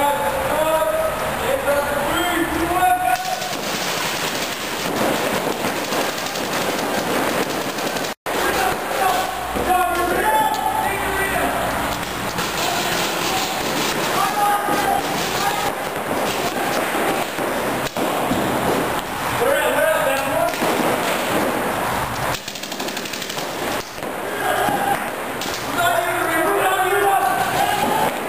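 Paintball markers firing in quick strings during a speedball game in a large indoor arena, where the shots echo. Players shout to each other over the fire at several points.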